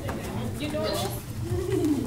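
Indistinct talking in a room, with a short sound near the end that rises and then falls in pitch.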